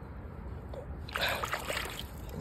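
A hand rummaging in a shallow muddy puddle, water sloshing and splashing, louder from about halfway through.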